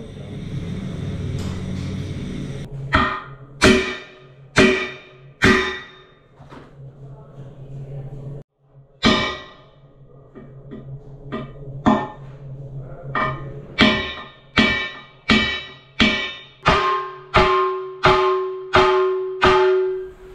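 Hammer blows on a dented aluminium alloy wheel rim, each blow ringing out with a metallic tone. The blows come in a few spaced strikes at first, then a faster, steady series, straightening the rim. A steady low hum runs underneath in the first part and stops suddenly partway through.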